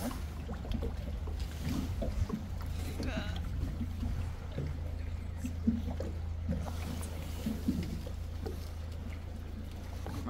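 Tour boat's motor running with a steady low drone while the boat moves slowly on the lake.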